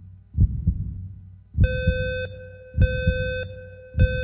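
Heartbeat sound effect: low, paired thumps repeating about every second and a bit. From about one and a half seconds in, it is joined by electronic countdown beeps, each about half a second long, in time with the beat.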